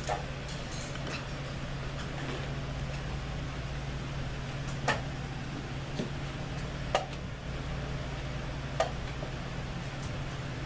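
Wooden chess pieces being set down on a wooden board and a digital chess clock's button being pressed: four sharp clicks a couple of seconds apart, over a steady low hum.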